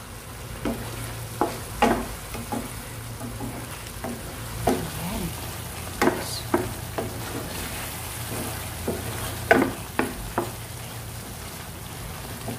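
Wooden spoon stirring and cutting chicken in a thick cream sauce in a nonstick frying pan, with irregular knocks and scrapes of the spoon against the pan, the loudest about two, six and nine and a half seconds in. Under it the sauce simmers with a faint sizzle, over a steady low hum.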